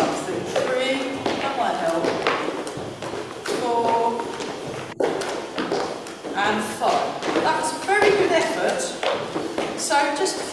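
Speech: a person talking throughout.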